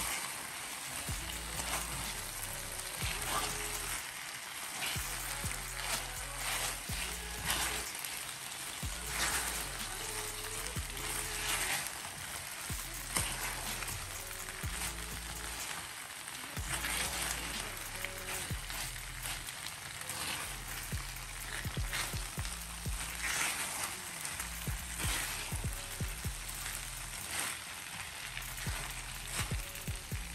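Chicken wings in a sticky glaze sizzling in a hot enamelled skillet as they are stirred, over background music with a steady repeating bass line.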